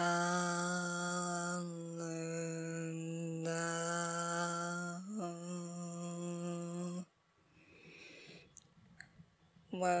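A woman's voice holding a long vocal tone on one steady pitch, a light-language chant, with brief breaks about 2 and 5 seconds in. It stops about 7 seconds in, leaving only faint small sounds.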